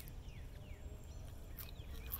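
Faint bird chirps, short falling notes, over a low outdoor rumble, with a couple of soft clicks about a second and a half in.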